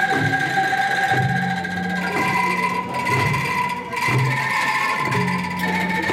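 Angklung ensemble playing a tune: shaken bamboo angklung sound sustained, shimmering chords that change every second or two. Low held bass notes and regular drum strokes run underneath.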